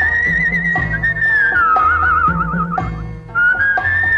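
Instrumental interlude of an old Tamil film song: a single high, whistle-like melody line with wide vibrato glides down about halfway through, breaks off briefly, and comes back up near the end, over a steady bass-and-drum beat of about two strokes a second.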